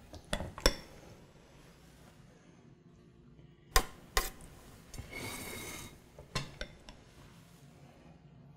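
A metal spoon clinking and tapping against a metal springform pan and a mixing bowl while ricotta cheese mixture is scooped in. There are scattered sharp clinks, the loudest nearly four seconds in, and a brief scrape just after five seconds.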